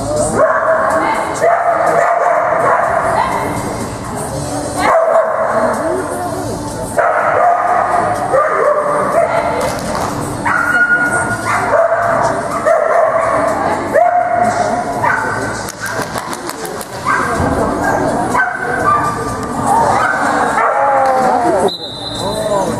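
Dog barking and yipping during an agility run, with music playing underneath.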